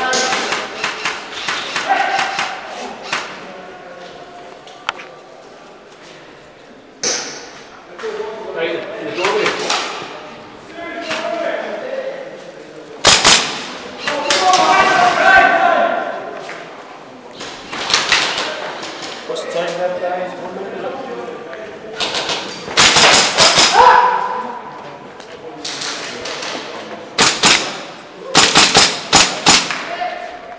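Airsoft guns firing in quick bursts of sharp cracks, with the heaviest fire in the second half, between patches of muffled voices in a large hall.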